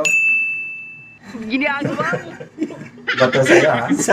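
A single bright ding, a bell-like tone that rings and fades away over about a second. Men's laughter and talk follow, loudest near the end.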